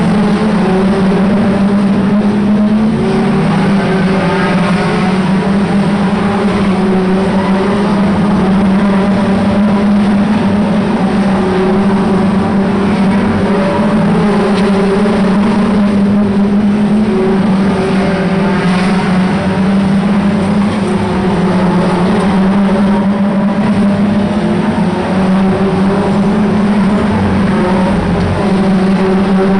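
A pack of 2-litre hot rod race cars running hard around a short oval, several engines blending into one loud, steady sound that rises and falls slightly as the cars pass.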